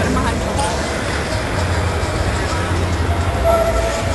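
Low, steady rumble with faint voices in the background.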